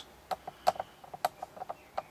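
Several faint, irregular light clicks and ticks spread over a couple of seconds, over quiet room tone.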